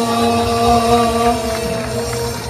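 A man singing one long held note in a traditional wedding chant, which fades out near the end.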